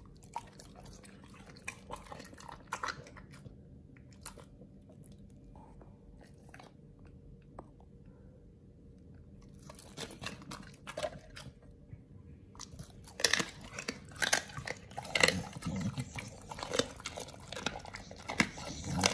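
A pit bull chewing and crunching raw meat: a few scattered bites at first, a lull midway, then steady, louder crunching chews for the last third.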